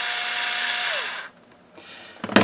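Cordless electric screwdriver motor run briefly with no load: a steady whir that rises in pitch as it spins up, holds for about a second, then falls as it winds down.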